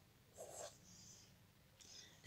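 Near silence with a few faint strokes of a pen writing on notebook paper.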